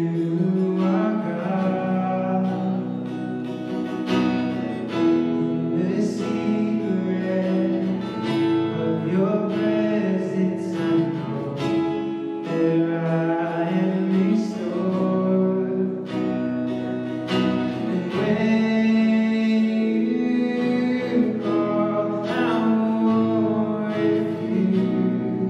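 Live worship song: a man and a woman singing together over a strummed acoustic guitar.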